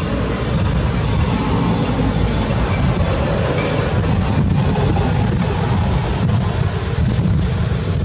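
A steady, loud low rumbling noise throughout, with a few faint short high tones in the middle.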